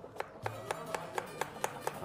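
A knife chopping onion on a cutting board in quick, even strokes, about four to five cuts a second, over background music with plucked strings.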